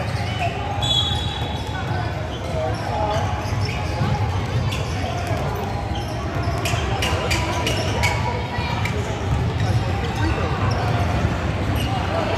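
A basketball bouncing on a hardwood gym floor, with indistinct voices of players and spectators around it.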